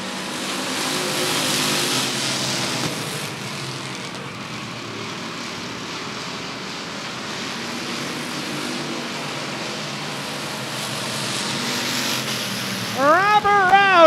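Pack of short-track stock cars running at speed around an asphalt oval, their engines a steady drone that swells as the cars pass one to three seconds in and builds again near the end. A public-address announcer starts talking just before the end.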